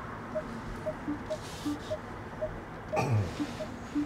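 XPeng G6 parking sensor warning beeping: short electronic beeps at a steady pace of about two a second, with a lower-pitched beep now and then, as the car creeps close to obstacles.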